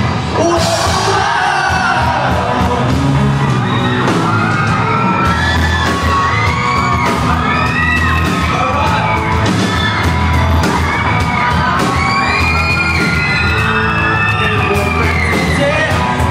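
Live rock band playing in a hall: electric guitars, drums and singing, loud and reverberant, with high-pitched screams and whoops from the crowd rising and falling over the music in the second half.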